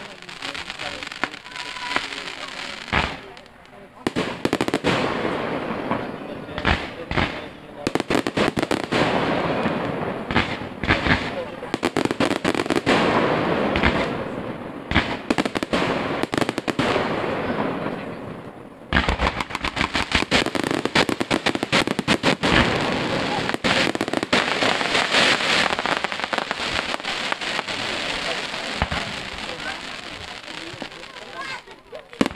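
Fireworks display: aerial shells bursting one after another over dense crackling from the stars. There are short lulls about four seconds in and again at about eighteen seconds, each followed by a thick, continuous barrage of bangs and crackle.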